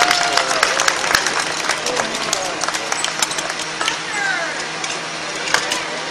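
Rapid sharp metal clicks and clanks of hand tools and parts being worked on a 1951 Jeep's running gear, under voices of onlookers and crew calling out.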